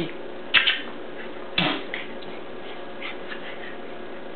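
A Jack Russell terrier barks twice, about a second apart.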